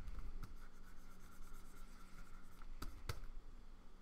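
Plastic stylus scratching lightly across a Wacom Cintiq pen display in short coloring strokes, with two sharp clicks near the end.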